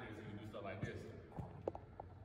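A basketball bouncing on a gym's hardwood floor, a few sharp knocks in the second half, under faint talk.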